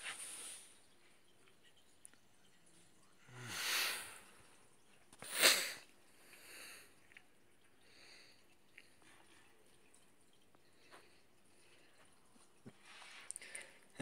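Quiet room with two short breathy noises from a person, about four and five and a half seconds in, the second louder and sharper, like a sniff.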